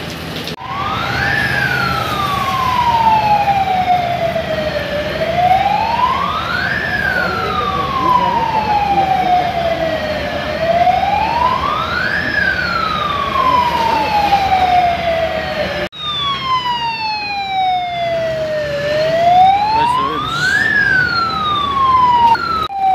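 Fire engine siren wailing slowly, over a low engine rumble. Each cycle climbs quickly in pitch and then falls over about four seconds, repeating roughly every five and a half seconds. There is a sudden break about sixteen seconds in, after which the wail carries on.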